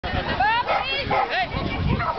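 A dog barking and yipping in several short, high calls, with people talking around it.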